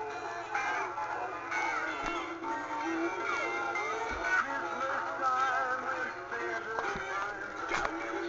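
Several battery-powered animated dancing Santa figures playing their tinny electronic Christmas songs with synthetic singing, the tunes overlapping into a jumble, with a few knocks along the way.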